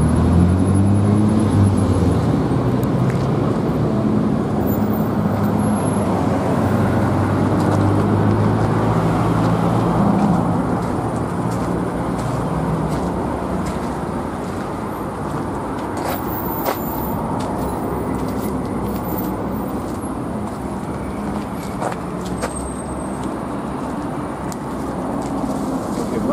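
A vehicle engine running steadily with a low hum, loudest in the first half and fading after about thirteen seconds into a steady background rumble.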